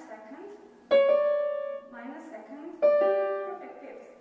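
Steinway grand piano: two notes struck about two seconds apart, each ringing and fading away. They play the first motif of the piece, built from a perfect fifth with a minor second.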